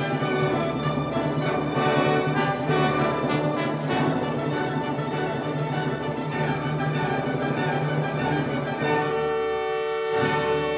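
Orchestral music: sustained full chords over a steady low note. About nine seconds in, the low note drops away, leaving a few held higher notes.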